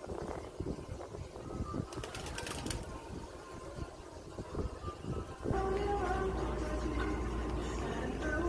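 Outdoor ambience with faint bird calls and scattered small clicks, then background music with a steady bass line comes in about five and a half seconds in and is louder.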